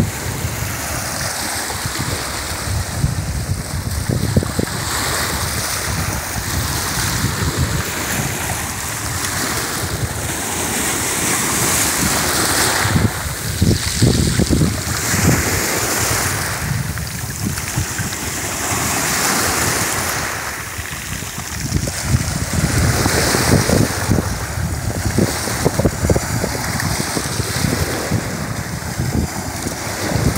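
Small waves breaking and washing over a pebble beach of the Black Sea, the surf swelling and ebbing every few seconds. Wind buffets the microphone throughout.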